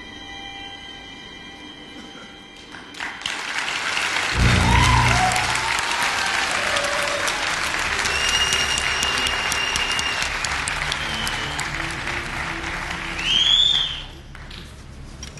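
Audience applause that breaks out about three seconds in and goes on to the end, over background music with a deep low accent as the clapping swells.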